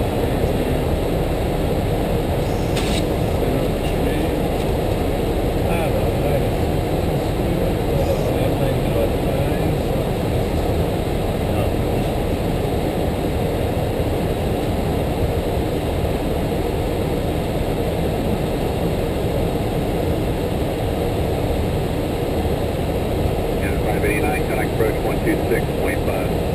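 Steady flight-deck noise of an Airbus A330-300 in flight: an even, unbroken rush of airflow and engine hum, with no change in level. A faint radio voice starts to come through near the end.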